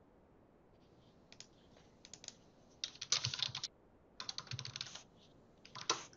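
Typing on a computer keyboard, in bursts of keystrokes. The two loudest runs come about three seconds in and about four and a half seconds in, with a short run near the end.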